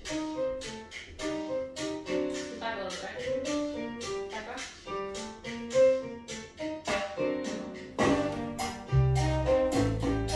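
Cha-cha dance music playing a quick run of short, struck melodic notes. A heavy bass line comes in about eight seconds in.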